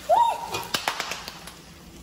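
A short high-pitched squeak near the start, then a few light clicks of a metal spatula against a stainless steel pot of ground beef.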